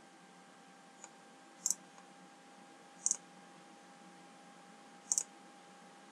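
Computer mouse buttons clicking: three short, sharp clicks about a second and a half apart, with a fainter tick just before the first, over a faint steady hum.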